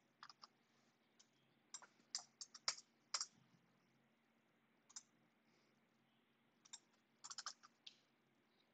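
Faint, scattered clicks of a computer keyboard and mouse, a few quick ones at a time with pauses between, as code is selected, cut and pasted.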